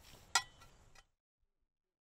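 A steel garden spade strikes the ground once with a sharp metallic clink about a third of a second in, over faint outdoor ambience that cuts off abruptly about a second in.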